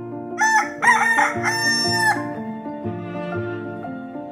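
A rooster crowing once, starting about half a second in: a few broken notes, then one long held note that stops about two seconds in. Soft background music plays underneath.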